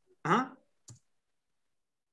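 A man's short "uh-huh", then a single faint click about a second in, followed by complete silence.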